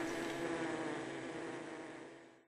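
Steady hum of a Carnica honeybee colony under a faint hiss, fading out near the end.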